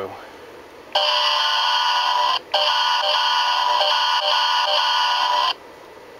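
MRC sound decoder in a model diesel locomotive playing its horn sample number 0, a multi-note air horn chord: a blast of about a second and a half, a brief break, then a longer blast of about three seconds that cuts off suddenly. The decoder's coarse 8-bit sound quality is audible in the horn.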